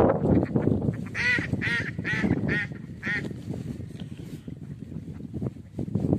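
Waterfowl giving a quick run of five short honking calls, about half a second apart. They come after a rush of wind noise in the first second.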